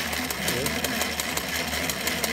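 Old Singer treadle sewing machine converted into an embroidery machine, running at speed: the needle stitching through the fabric in a rapid, even clatter.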